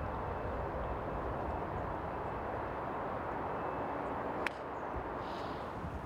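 Steady outdoor background noise: a dull, even rumble and hiss. A single sharp click comes about four and a half seconds in, after which the noise is a little quieter.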